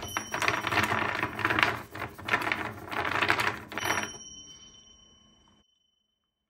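A rapid clatter of clinks and clicks for about four seconds, fading out with a faint ringing tone.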